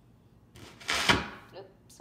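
Turntable stylus set down on a spinning vinyl record, giving a loud, scratchy thump through the speakers that lasts about a second.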